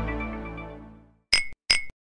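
A held guitar chord from a short music sting rings out and fades over about the first second, then two short, sharp clinks sound about half a second apart.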